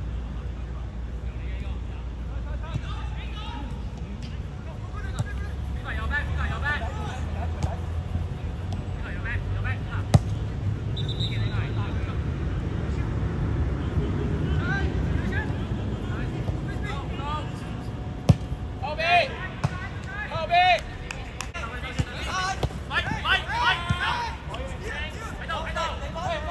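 Footballers calling and shouting to each other across the pitch, the calls thickening in the second half, with a couple of sharp thuds of the ball being kicked, about ten and eighteen seconds in, over a steady low background rumble.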